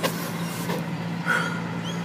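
A motor vehicle's engine running at a steady low hum, with one short knock at the start.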